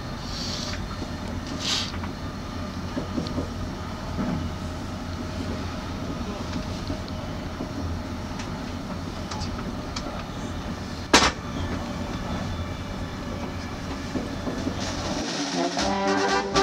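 Passenger train carriage heard from inside while running: a steady low rumble and rattle, with one sharp bang about eleven seconds in.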